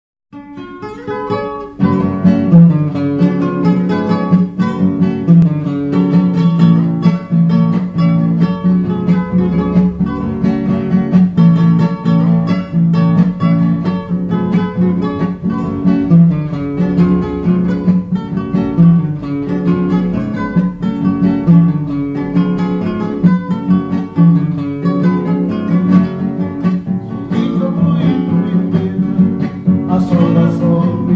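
Two acoustic guitars playing an instrumental passage of plucked notes, opening with a quick rising run before the full accompaniment comes in about two seconds in.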